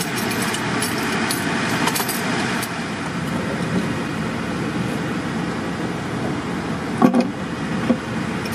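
An engine running steadily, with light metallic clinks in the first few seconds and a single knock about seven seconds in.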